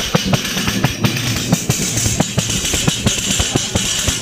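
Large wooden frame tambourine (pandereta) with metal jingles, struck by hand in a steady folk rhythm of about four beats a second. The jingles ring on between the hits.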